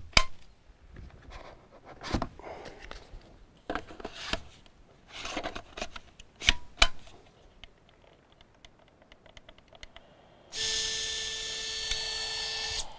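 Handling a DJI Inspire 2 drone at its hard foam-lined case: scattered clicks, knocks and rubbing as the drone and its two batteries are fitted, with two sharp clicks about six and a half seconds in. Near the end a steady hum with a high whine starts abruptly and holds for about two seconds.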